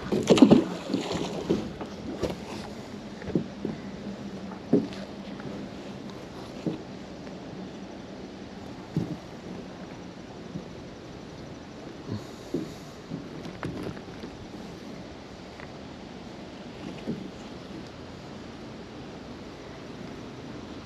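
Magnet-fishing rope being hauled in by hand from a small boat: scattered light knocks and rope rustles over a faint steady background, with a cluster of louder knocks in the first second.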